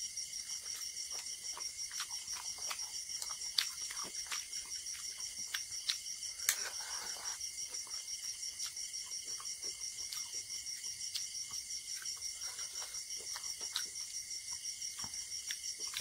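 Close-up chewing and wet mouth clicks of someone eating mutton curry and rice by hand, scattered sharp smacks through it, a few louder ones a few seconds in. Behind it, a steady high chirping of insects pulses about four times a second.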